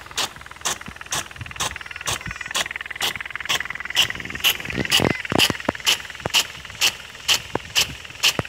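Big gun sprinkler on a hose-reel irrigator, its drive arm clacking about twice a second as it steps the gun round, over the steady rush of the water jet. A few heavier thumps come about five seconds in.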